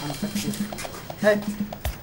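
A man's short spoken call, "Hei!", about a second in, over a steady low hum and a few faint clicks.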